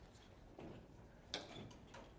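Near-silent room tone with a few faint clicks, the clearest about one and a half seconds in.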